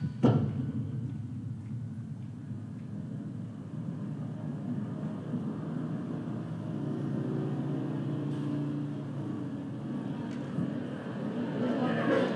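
A single thump, then a steady low rumble of city traffic. Crowd chatter starts near the end.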